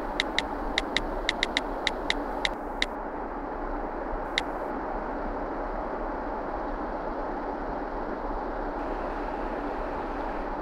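Smartphone touch-keyboard key clicks as a message is typed: about eleven quick, uneven taps in the first three seconds, then a single tap about four seconds in. A steady hiss lies underneath.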